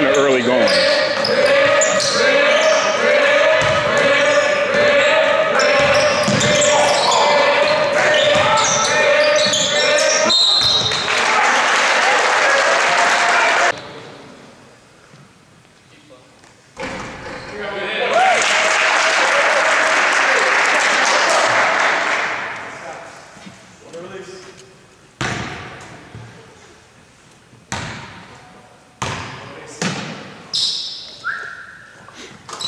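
Basketball game noise in an echoing gym: crowd voices and court sounds, with a short whistle about ten seconds in and a swell of crowd noise after it. After a sudden drop, the gym is quieter, with another rise of crowd noise and then a few single basketball bounces on the hardwood floor near the end.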